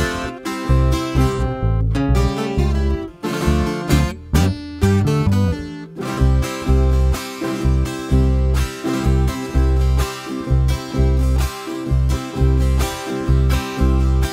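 Instrumental accompaniment of a strummed acoustic guitar over an electric bass playing a steady, bouncing bass line.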